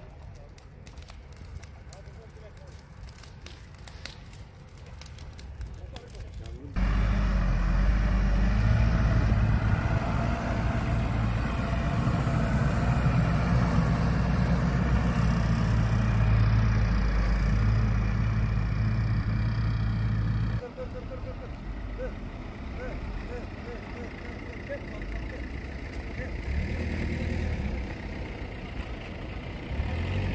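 Dry grass and brush burning with a quiet crackle. About seven seconds in, a fire engine's diesel engine starts to be heard, running loudly and steadily; about twenty seconds in it drops to a quieter engine sound.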